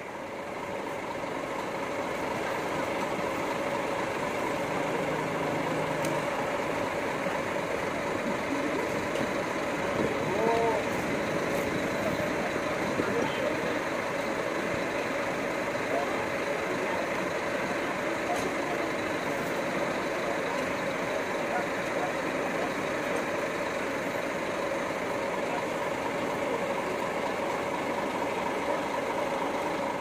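Coach bus idling: a steady, unchanging engine hum with a constant tone running through it.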